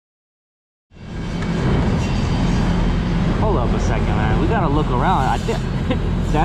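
Silence for about the first second, then a steady low hum and rumble of running machinery, with an indistinct voice over it partway through.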